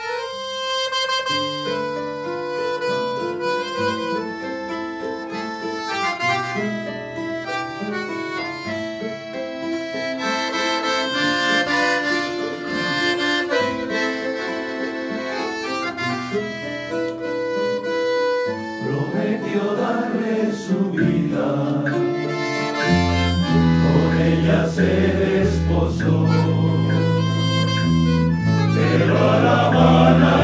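A small ensemble of accordion, guitars, Spanish lutes and keyboard starts a bolero abruptly, the accordion carrying a sustained melody. About 19 s in, a male choir comes in singing, and a few seconds later a strong deep bass line joins.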